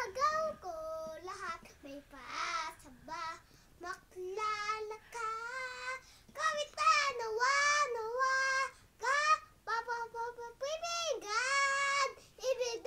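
A young boy singing alone, unaccompanied, in short phrases with held, wavering notes and brief pauses between them.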